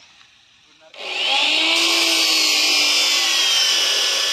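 An electric power tool starts up suddenly about a second in and runs steadily and loudly, its motor whine rising briefly as it spins up and then holding a high, even pitch.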